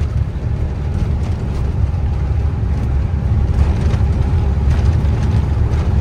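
Heavy truck driving on a rough unpaved mountain road, heard from inside the cab: a steady low engine and road noise with light rattling of the cab.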